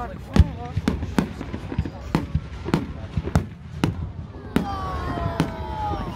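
A fireworks display: aerial shells going off in an irregular series of sharp bangs, about ten in six seconds, the loudest about half a second in.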